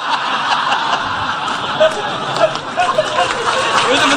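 A crowd of listeners laughing together, a steady mass of many overlapping voices laughing and murmuring.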